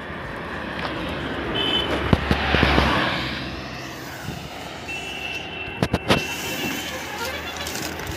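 A vehicle passing on the highway, its road and engine noise swelling and fading over about two seconds, with a few sharp knocks from shrink-wrapped packs of plastic water bottles being handled and set down.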